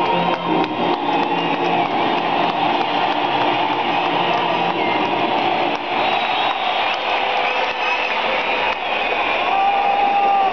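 Music over the stadium's loudspeakers fading out in the first second or so, giving way to the steady noise of a large stadium crowd with scattered whistles.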